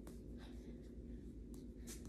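Faint rustling and scuffing with a few soft clicks from a person dancing, over a low steady hum.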